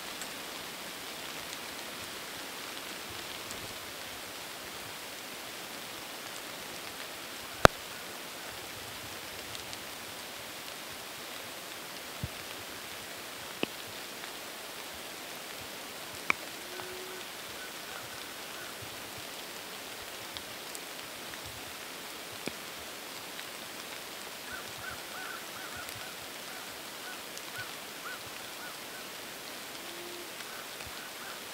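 Steady light rain falling through the woods, with a few sharp ticks of drops or twigs. The loudest tick comes about a quarter of the way in.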